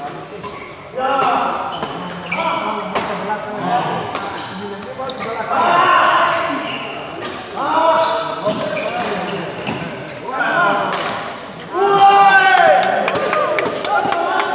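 Badminton rackets striking the shuttlecock in a fast doubles rally, sharp hits every second or two echoing in a large hall, with voices of players and spectators shouting and talking between the hits.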